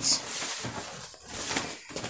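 Fabric rustling in irregular swishes as a lined garment piece is picked up and turned over by hand.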